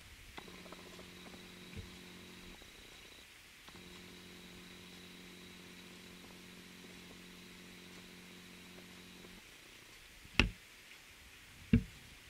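Faint steady hiss of rain falling on garden foliage, under a low mechanical hum that runs briefly, stops for about a second, then runs again for about six seconds. Two sharp knocks come near the end, the second just before it ends.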